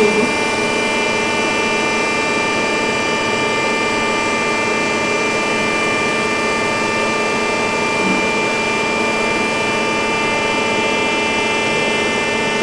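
Steady electrical and mechanical hum of a powered-on friction stir welding machine, a constant whine of several fixed tones that holds at one level.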